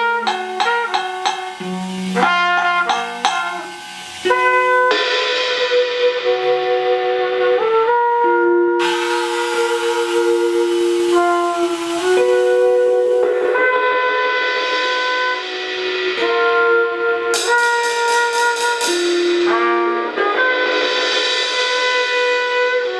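Live jazz trio: archtop guitar picking short notes for the first four seconds, then a cornet playing long held notes that slide from pitch to pitch. Under it, cymbals swell and fade, rolled with soft mallets.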